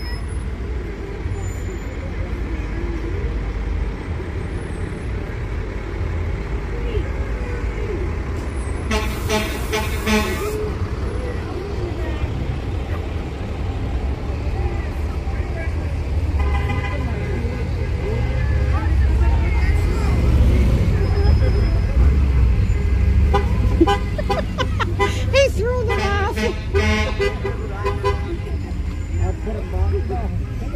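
Parade buses and a pickup truck rolling slowly past with a steady low engine rumble, a horn tooting about nine seconds in and again briefly a few seconds later. Near the end, voices and shouts from the crowd along the street.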